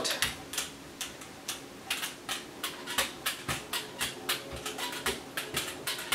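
A brayer rolling wet paint back and forth across a gel printing plate, making a run of light, uneven ticks, about three a second.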